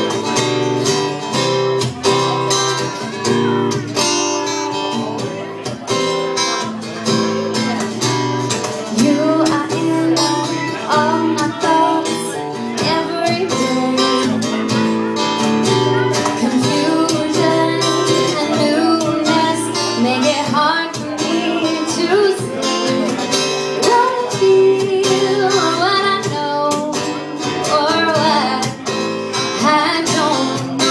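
Live acoustic trio: a strummed acoustic guitar and a cajón beat, with a woman's voice coming in singing a few seconds in.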